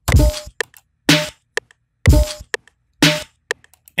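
Sliced drum-loop samples played back as a sparse beat: a heavy low drum hit about once a second, with smaller, sharper clicks in between.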